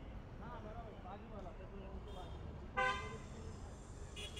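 A car horn gives one short, loud toot about three-quarters of the way through, over people talking in a crowd and a steady low rumble of street traffic.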